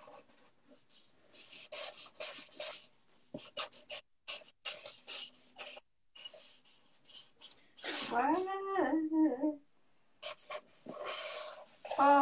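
Felt-tip markers scratching and squeaking across paper in short, quick strokes, two hands drawing at once. About eight seconds in, a brief hummed voice sound rises and falls over the scratching.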